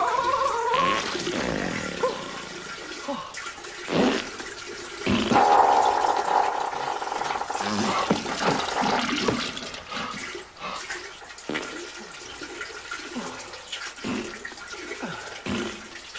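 Toilet sounds: a wavering pitched sound near the start, then water splashing and gurgling, with a louder rushing stretch like a flush about five to nine seconds in.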